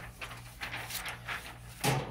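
Soft, irregular rustling and handling of a sheet of butcher paper being cut to size, over a low steady hum, with a louder rustle near the end.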